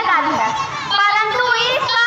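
Speech only: a girl declaiming a monologue in Hindi into a microphone.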